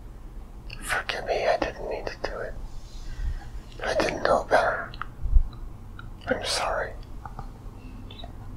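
A man whispering in three short, breathy phrases, with a low thump about two-thirds of the way through.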